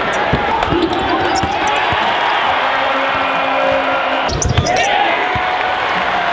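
Arena crowd noise from a basketball game, full of voices, with a basketball bouncing on the hardwood court in scattered knocks, several together about four and a half seconds in.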